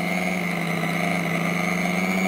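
Electric hand mixer running at a steady speed, its beaters whipping whipped-cream powder and chilled milk in a glass bowl: an even, constant-pitched motor hum.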